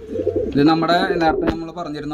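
Gaditano pouter pigeon cooing, low and drawn out, with a sharp click about one and a half seconds in.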